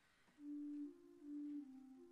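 Organ playing a slow, soft melody in pure, steady single notes, beginning about half a second in.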